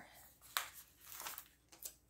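Faint crinkling of a paper sticker sheet as a sticker is peeled off, with a soft click about half a second in and another near the end.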